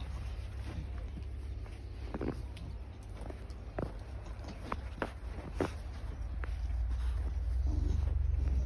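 Footsteps crunching in fresh snow: a scattering of short, sharp crunches, a second or so apart, over a steady low rumble.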